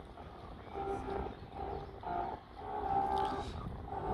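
Ship's horn, heard at a distance across the harbour, sounding a series of short blasts and one longer blast near the end, all at the same steady pitch.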